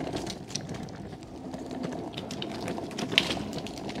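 Electric skateboard wheels rolling over stamped concrete paving: a steady rough rolling noise with irregular clicks and rattles as the wheels cross the joints in the stones.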